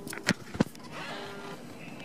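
Ignition key on a Kawasaki Vulcan 900 being switched on: a few sharp clicks in the first half second, then a faint steady hum, typical of the fuel-injection pump priming.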